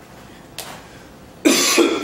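A man coughing into his hand: two sharp coughs in quick succession near the end.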